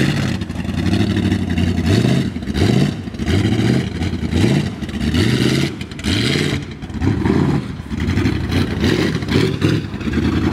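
A lifted off-road truck's engine revving up again and again, about once a second, each rev rising in pitch as it drives.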